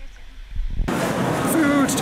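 Low rumble on a waterproof action camera held at the water's surface, cut off suddenly a little under a second in by the noise of a busy covered dining area: many voices and general chatter, with one voice speaking up near the end.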